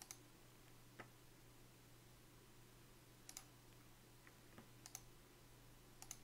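Near silence with a faint steady hum and a few faint, scattered computer clicks, about six over several seconds, one of them doubled.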